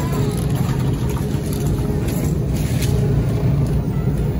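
Steady low rumble and hum in a supermarket freezer aisle, from a shopping cart rolling over the floor and the refrigerated cases running.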